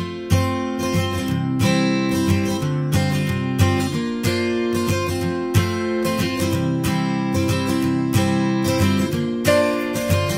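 Background music: acoustic guitar strumming chords in a steady rhythm.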